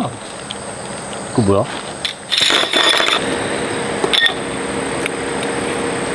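Metal tent poles and their clamp fittings being handled: a rustle, then scattered sharp clicks and clinks. A steady high insect drone runs behind.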